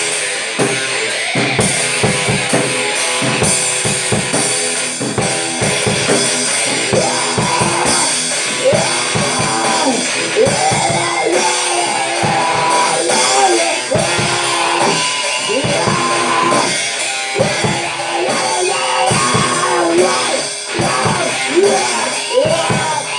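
A rock band playing live in the room: drum kit and electric guitar. It is loud and continuous, with the drums hitting steadily and the guitar's notes bending up and down from about a third of the way in.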